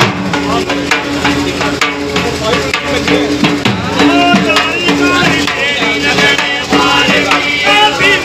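Dhol barrel drums beaten with sticks in a fast, driving folk rhythm, with voices singing over a steady held tone.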